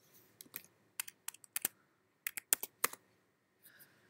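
Typing on a computer keyboard: about a dozen sharp key clicks in two quick runs as numbers are entered.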